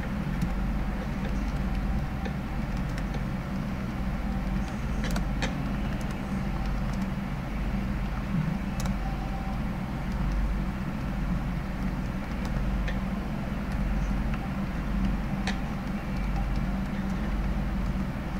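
Steady low hum and rumbling background noise, with a few faint, scattered clicks.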